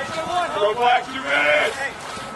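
People shouting: a few drawn-out calls in a row, each rising and falling in pitch.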